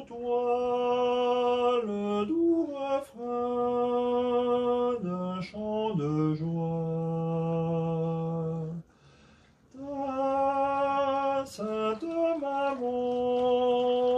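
A man singing a slow French Christmas lullaby solo, unaccompanied, in long held notes that step between pitches. He breaks off briefly about two-thirds of the way through, then takes up the next phrase.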